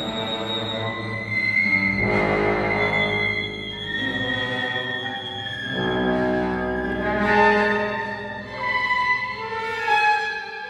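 Live orchestra playing held chords, with bowed strings prominent and high sustained notes on top; the harmony shifts every second or two.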